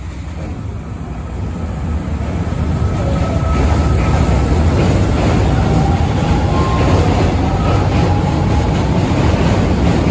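Kita-Osaka Kyuko 8000 series electric train pulling out of a station. Its running noise and wheel rumble grow louder over the first four seconds as it gathers speed, then hold steady as the cars pass close by.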